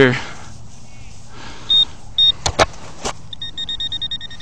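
Handheld metal-detector pinpointer beeping: two short high beeps, a few sharp clicks, then rapid even beeping at about six beeps a second as the probe closes in on a buried metal target.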